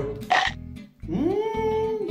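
Background music with a steady low beat. Over it, a man tasting a spoonful makes a short vocal sound, then a drawn-out 'mmm' that rises in pitch and holds for about a second.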